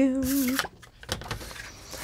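A woman's brief hummed 'mm', then a plastic scoring board being set down on a cutting mat with a few light knocks and paper sliding over it.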